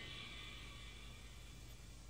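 A quiet pause in the soundtrack: only a faint steady low hum and hiss.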